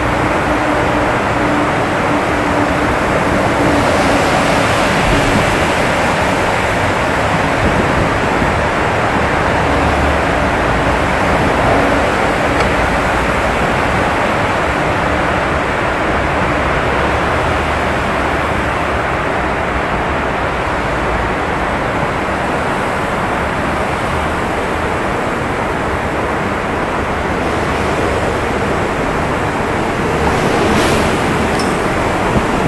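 Steady loud rushing noise from riding an electric unicycle through a road tunnel: passing traffic and air rushing over the microphone, echoing off the tunnel walls.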